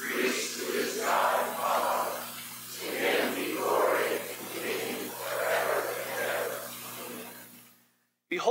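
A church congregation reading a Bible passage aloud in unison, many voices speaking together and blurred into one mass of speech, fading out near the end. A steady low hum runs underneath.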